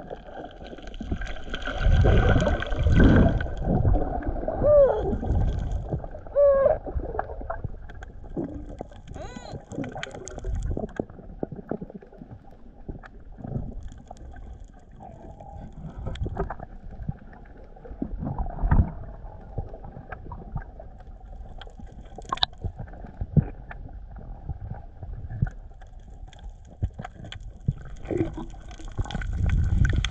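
Muffled underwater sound picked up by a submerged action camera: low rumbling water movement with gurgling bubbles and short gliding squeaks a few seconds in. A few dull knocks come and go, with one sharp click a little after the middle.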